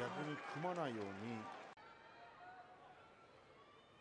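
A faint voice speaking for about a second and a half, then near silence.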